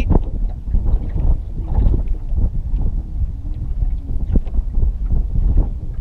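Wind buffeting the microphone, a loud low rumble, with faint scattered clicks.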